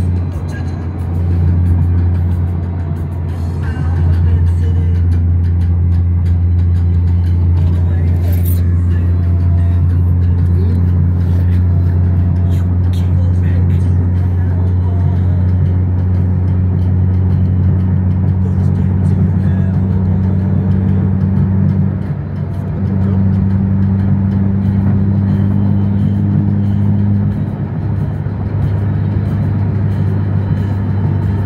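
Steady low drone of road and engine noise inside a car cruising at freeway speed, with music playing underneath.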